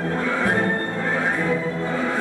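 Orchestral ballet music playing, with sustained, overlapping notes at an even level.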